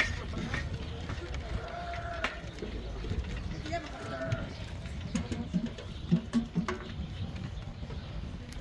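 Scattered sharp metal knocks and clanks from men climbing and handling a steel fireworks-tower frame, over a low outdoor rumble, with a couple of drawn-out distant calls.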